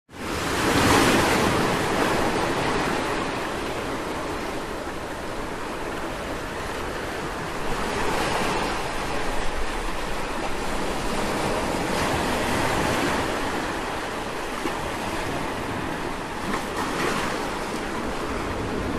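Surf washing onto a shallow sandy beach, the sound of the waves swelling and easing several times.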